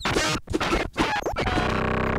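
Glitchy electronic music and sound effects: rapid chopped, scratch-like stutters with short pitch glides, settling into a steady buzzing chord near the end.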